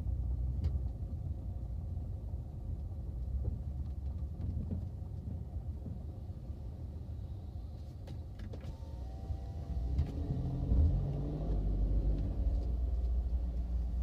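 Low engine rumble of a stage 2 MKV Jetta 2.0 TSI heard from inside its cabin while idling and creeping forward in line. From about ten seconds in a louder, steadier engine note comes up.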